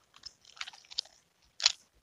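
Nunchaku being spun and caught: faint scattered clicks and rattles of the chain and sticks, then one sharper clack near the end as the sticks come together in the hand.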